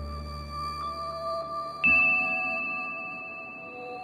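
Slow ambient music of held tones, its deep bass fading out early. About halfway through, a single high note strikes and rings on.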